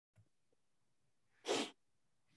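A single short, sharp burst of a person's breath into a close microphone, about one and a half seconds in.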